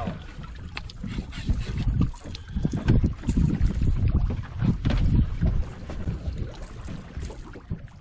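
Irregular water splashes and knocks as a hooked walleye thrashes at the surface beside a boat and is scooped up in a landing net, over an uneven rumble of wind buffeting the microphone.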